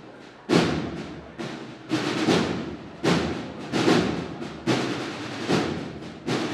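Band percussion playing a slow, heavy beat: loud drum strokes with cymbal crashes about once a second, each ringing out in a reverberant hall, with no brass or voices.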